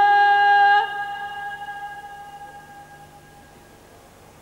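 A female Persian singer's voice holding one long steady note at the end of a phrase, live on a microphone. It stops about a second in and then fades away over the next two or three seconds.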